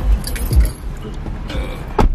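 Keys jingling and clinking amid rustling handling noise, with a few short low thumps, while getting into a car.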